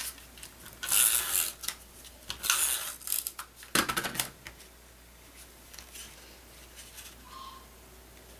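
Adtech adhesive tape runner drawn across cardstock in three short strokes, each about half a second, then faint paper handling as the strip is pressed down.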